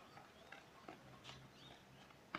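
Near silence: faint outdoor ambience with a few faint, scattered taps.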